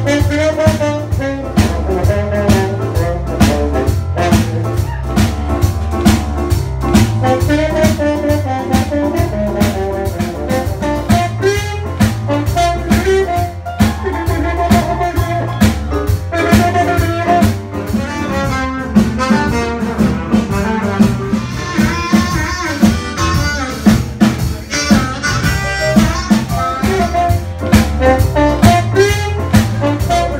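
Live blues band playing an instrumental passage: harmonica and horns, trombone and saxophone, over a steady bass and drum beat.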